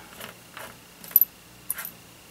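Small metal screws and washers clinking and sliding as a hand spreads them across a sheet of paper: a few light, sharp metallic clicks, the loudest about a second in and more a little before the end.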